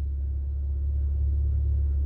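Steady low rumble inside a car's cabin, typical of the engine idling, with no change in pitch.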